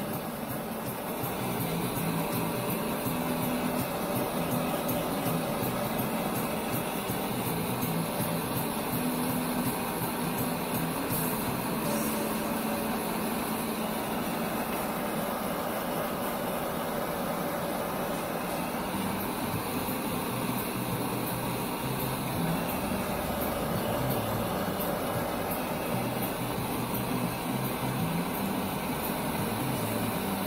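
Handheld butane torch running with a steady hiss, its flame heating the quartz banger of a glass dab rig.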